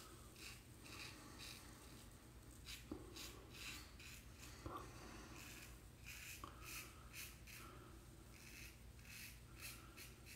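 Faint, rapid scratching of a Vikings Blade Emperor adjustable safety razor cutting beard stubble through shaving lather, with short strokes repeating about two to three a second. This is a second, across-the-grain pass, with the razor's blade gap turned down to five.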